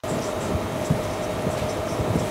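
Steady background hiss with a faint hum, picked up by the mic at the board, with a few light taps from a marker writing on a whiteboard.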